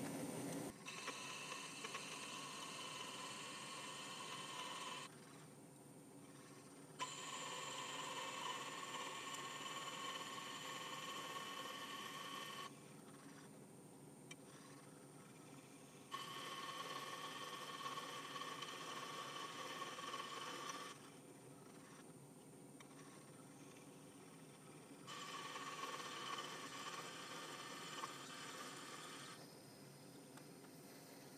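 Twist drill cutting into a collet blank's back end on an Atlas 10-inch lathe, giving a thin steady whine over the running of the lathe. The cut comes in four spells of about four to five seconds each, stopping abruptly with pauses of two to four seconds between.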